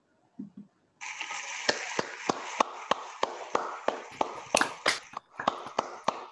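A few people clapping, starting about a second in after a moment of silence and thinning out near the end.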